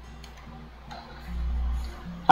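Computer keyboard keys clicking a few times as a short word is typed, over a steady low hum that swells briefly after the middle.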